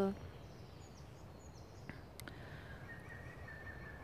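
Quiet woodland ambience: a low steady rumble with faint, high bird chirps in the first second and a half. A single sharp click comes about two seconds in, followed by a faint steady high tone.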